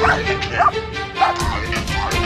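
A German shepherd barking at a decoy in a bite suit while held back on a line during protection training: three sharp barks about half a second apart, over background music with a beat.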